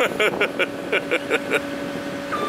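A person laughing in a quick run of about seven short bursts, over the steady hum of an idling John Deere 85G mini excavator.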